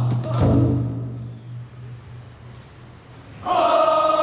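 Crickets chirp steadily through a lull in a festival team's practice. The team's chanting dies away in the first second, and about three and a half seconds in the carriers break into a loud, sustained chant together.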